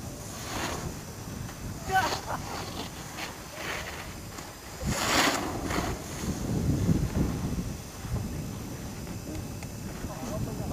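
Wind buffeting the microphone in uneven gusts, with faint distant voices.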